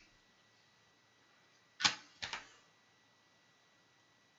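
A match struck against the striking strip of a matchbox: two short scratches about half a second apart.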